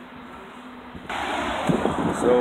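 Quiet outdoor background noise with a faint steady low hum; about halfway through it cuts suddenly to a much louder rush of noise, and a man's voice begins near the end.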